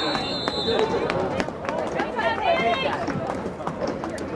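Several voices shouting and calling out on a lacrosse field, with a referee's whistle blowing steadily for about the first second. Scattered sharp clicks run through it.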